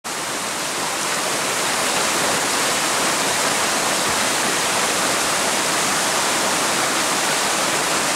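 Shallow rocky stream running over stones, a steady rush of water.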